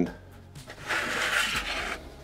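Sheet styrene plastic pieces being handled and fitted against the model, a brief rubbing scrape lasting about a second near the middle.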